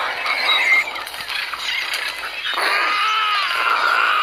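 Film soundtrack played through a computer's speakers: a dense wash of action noise, with high wavering squeals rising and falling in the second half.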